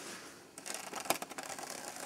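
Snow crunching and scraping under a plastic sled as it is dragged by a rope over a snowbank, a run of irregular crackles starting about half a second in.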